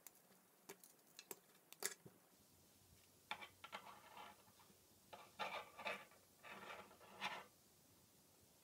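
Faint clicks of plastic K'NEX rods and connectors being snapped together and handled, a few single clicks at first and then short clusters of clicks.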